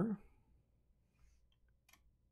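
Near silence with a faint tick and then one sharp click of a computer mouse near the end, after the tail of a man's spoken word at the start.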